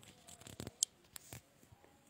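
Faint handling noise from a phone being moved and held up: a few soft clicks and rustles, with one sharper click a little under a second in.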